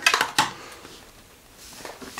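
A few light clicks close together at the start as a metal multi-tool and a plastic cassette are handled on a desk, then a faint rustle of wrapping near the end.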